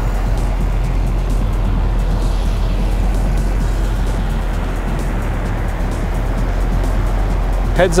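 Chevrolet Corvette C5's LS1 5.7-litre V8 idling, a steady low hum.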